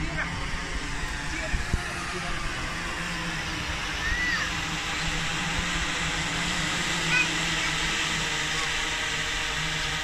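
Six-rotor Meituan delivery drone hovering and coming down overhead. Its rotors make a steady hum with a hiss over it, which grows a little louder partway through as it nears.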